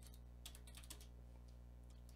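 Faint computer keyboard typing, a few light key clicks over a steady low hum.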